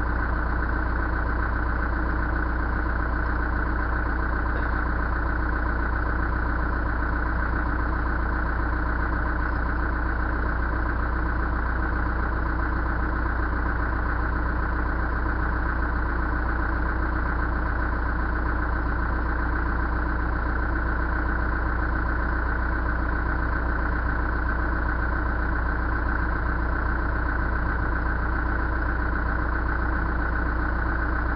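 Backhoe engine idling steadily with a low, even running note.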